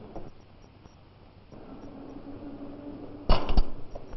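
Faint hiss with a low, steady hum, then two sharp knocks about a third of a second apart near the end.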